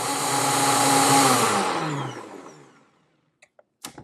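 A NutriBullet blender running in a short burst on thick tahini sauce, then spinning down with its pitch falling until it stops about three seconds in.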